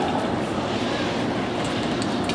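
Steady hiss and scrape of short-track speed skate blades cutting the ice.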